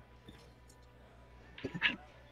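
Quiet room tone, with a brief murmured word from a man's voice near the end.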